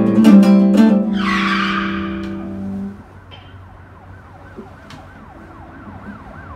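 Acoustic guitar strummed, then a last chord left ringing and dying away over about two seconds, with a brief hissing rush about a second in. After that, a faint emergency-vehicle siren wails up and down rapidly, about twice a second.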